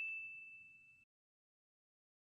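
The dying tail of a single bell-like ding sound effect: one clear ringing tone fading out within about half a second, then dead silence.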